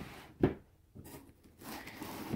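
Faint rustling and rubbing of tissue paper and cardboard as a box is handled.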